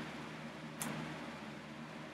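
Quiet room with a steady low hum, and one short soft handling noise under a second in as a paperback book is moved aside.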